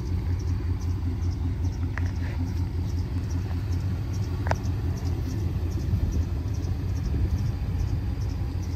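Second-generation Dodge Ram pickup's engine idling: a steady low rumble, with two faint clicks about two and four and a half seconds in.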